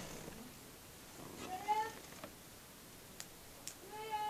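A single short, rising vocal call a little before the middle, faint over room noise, followed by a few light clicks.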